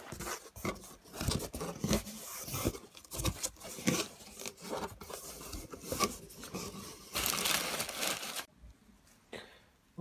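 A cardboard shipping box being opened and unpacked by hand: irregular scrapes, tears and knocks of cardboard and packaging, with a longer stretch of rustling about seven seconds in. The handling stops about a second and a half before the end.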